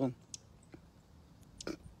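A pause in a woman's talk: her last word ends at the start, then a quiet stretch with a few faint clicks, and a brief vocal sound near the end.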